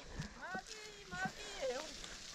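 Faint, distant children's voices: a few short calls and shouts, much quieter than the nearby talk.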